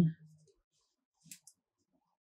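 Two faint, short clicks a little over a second in, from an aluminium crochet hook and plastic stitch marker being handled while crocheting in yarn.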